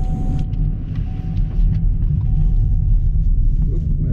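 Engine and road noise of a 2019 Chevrolet Camaro 1LE heard inside the cabin: a steady low rumble while the car drives on track at a fairly constant pace.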